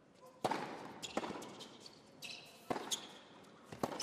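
Tennis rally on an indoor hard court: the serve is struck about half a second in, followed by three more sharp racket hits on the ball over the next few seconds, each with a short echo in the arena.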